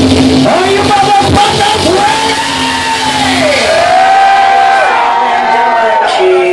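Live rock band in a club. About half a second in the full band sound thins out, leaving long high notes that glide up and down and hold for a second or more before the band comes back in.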